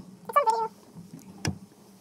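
A short high-pitched cry with a wavering pitch, followed about a second later by a single knock.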